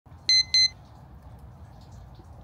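Two short electronic beeps in quick succession, a quarter second apart, just after the start, each a clear high tone. After them only a faint low rumble of background noise.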